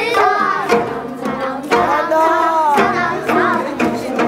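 A girl singing in Korean folk style with pitch slides, over an ensemble of gayageum (Korean twelve-string zithers) plucking along: gayageum byeongchang, singing with the zither. A few sharp drum strokes mark the beat.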